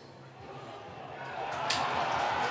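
Spectator crowd noise swelling into a cheer as a goal is scored, with a sharp knock about one and a half seconds in.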